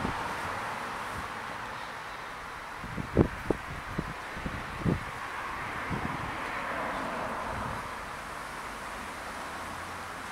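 Quiet outdoor background hiss with a handful of soft, dull thumps in the middle few seconds.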